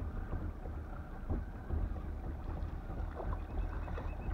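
Water slapping against the hull of a small fibreglass boat under way, with wind rumbling on the microphone. Near the end a fast, even ticking starts as a hooked fish strikes the trolled lure and the reel's drag gives line.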